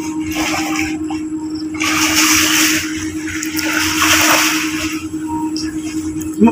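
Sea water splashing as a man swims and wades, with two longer splashes about two and four seconds in, over a steady low hum.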